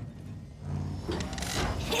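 Cartoon truck engine rumbling as a vehicle drives up, with a rushing noise building over the last second as it pulls in.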